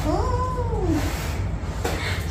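A single drawn-out meow, rising then falling in pitch, lasting about a second near the start, followed by a short knock near the end.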